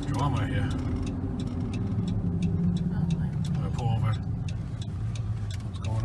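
Steady engine and road drone inside a minivan's cabin while it drives along a town road.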